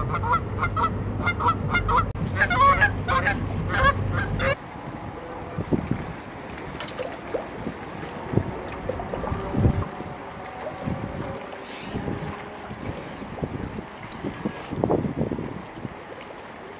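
Geese honking, many short calls in quick succession, over a low steady hum. About four and a half seconds in, the honking and the hum stop abruptly. A quieter stretch of soft, irregular knocks follows.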